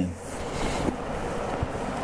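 Synthetic cycling-jersey fabric rustling steadily as it is handled and lifted.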